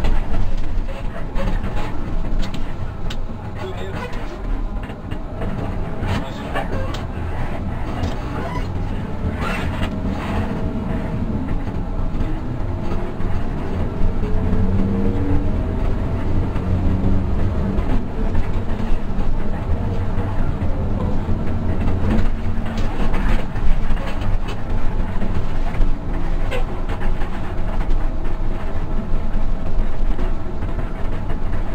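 Hino RK8 bus diesel engine running under way, heard inside the cabin with road rumble and body rattles; the engine note climbs about halfway through as the bus pulls.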